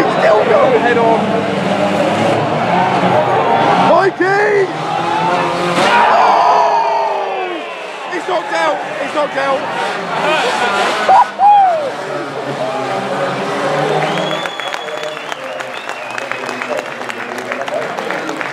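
Banger-racing cars running on the track, with engines revving and tyres squealing, mixed with the voices of spectators close to the microphone.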